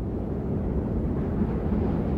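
A low, steady rumbling noise, slowly growing louder.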